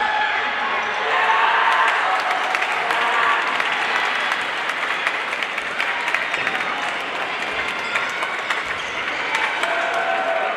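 Busy sports-hall din at a badminton tournament: many voices and clapping from teams and spectators, with frequent sharp clicks of rackets striking shuttlecocks, echoing in the large hall.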